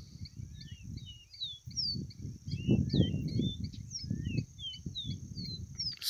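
Caboclinho (copper seedeater) singing: a quick, continuous run of short whistled notes sweeping up and down, over a steady high insect trill.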